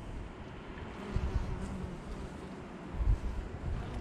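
Wind buffeting the microphone in low rumbling gusts, strongest about a second in and again near the end, over a faint steady hum.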